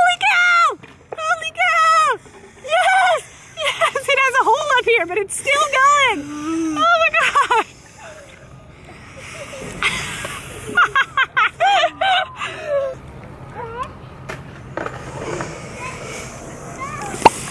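Wordless voices: a woman laughing and calling out in several runs over the first eight seconds, then again from about ten to thirteen seconds in.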